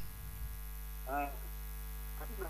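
Steady electrical mains hum, a low buzz made of many evenly spaced steady tones, with a brief faint voice about a second in.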